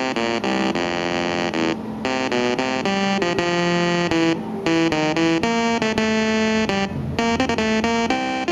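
Computer music from the CSIRAC (CSIR Mk1) valve computer's loudspeaker, the 'hooter': a melody of short electronic notes stepping up and down, each a buzzy tone rich in overtones, made from raw pulses of the computer's data words rather than a synthesizer.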